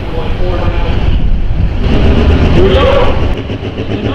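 Diesel pro stock pulling tractor's engine running loud with a heavy low rumble, a voice talking over it; the rumble drops away near the end.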